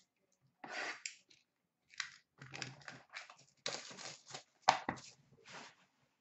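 A sealed hockey card box being opened by hand: cardboard and wrapping tearing and crinkling in irregular bursts, with a sharp knock about five seconds in.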